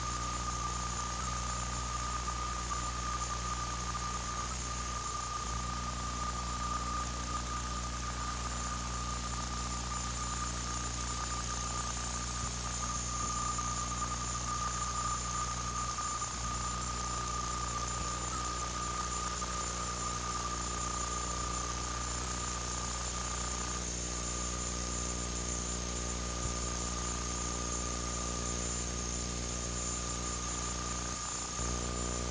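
Steady high-pitched whine over a low electrical hum and hiss: noise in an old videotape transfer, with no game sounds standing out.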